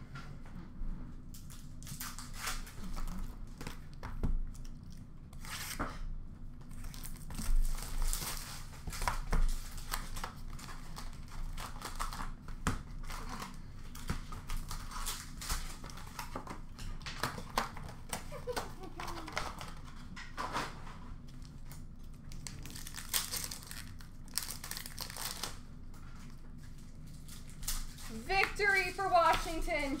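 Upper Deck hockey card pack wrappers being torn open and crinkled in repeated rustling bursts as the cards are pulled out and handled.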